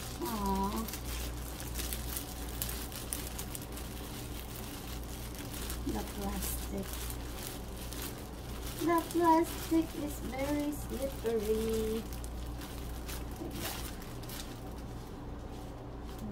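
Clear plastic gift wrap crinkling and rustling as it is gathered and tied shut with a ribbon around a fruit arrangement. A voice without clear words is heard briefly near the start, about six seconds in, and most loudly a little past the middle.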